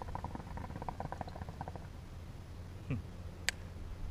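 Hookah water bubbling in a quick, soft rattle as the smoker draws on the hose, dying away after about two seconds. A brief falling squeak and then a single sharp click follow near the end.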